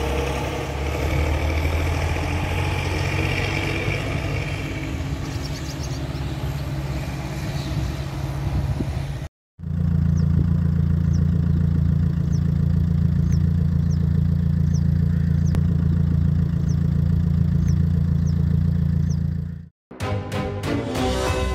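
A steady low engine drone in two takes, split by a brief dropout about halfway through. In the second take a short, high chirp repeats roughly once a second over the drone.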